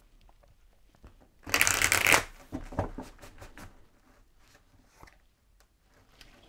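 Tarot cards being shuffled: a short burst of card riffling about a second and a half in, followed by softer card handling and a light tick near the end.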